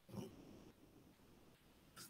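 Near silence: room tone, with a faint, brief breath-like sound from a man's voice just after the start.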